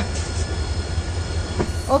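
Passenger train running past a platform: a steady rumble and hiss from the carriages, with a few faint clicks.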